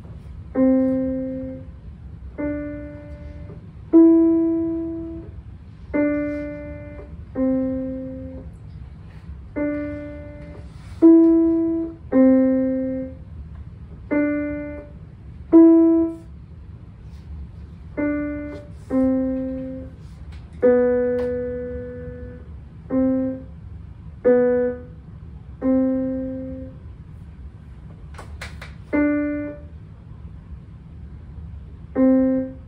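Digital piano played one note at a time: a slow, simple beginner melody of single notes around middle C, each struck and left to fade for about a second before the next, with short gaps between.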